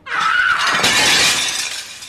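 A round banquet table being overturned, its glasses and dishes crashing and shattering in a sudden loud burst that keeps going.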